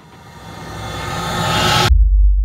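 A rising whoosh sound effect that swells steadily louder and brighter for about two seconds, then cuts off abruptly into a deep boom near the end.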